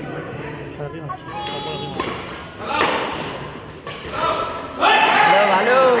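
Badminton rackets striking a shuttlecock in a rally, several sharp hits about a second apart. About five seconds in, a crowd of spectators breaks into loud shouting and cheering as the rally ends.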